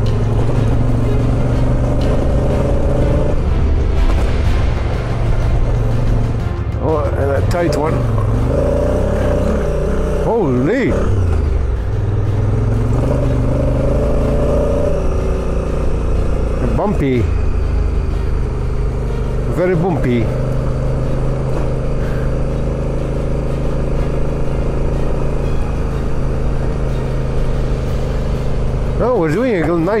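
Adventure motorcycle engine running at a steady pace while riding a gravel road, with wind and road noise on the microphone.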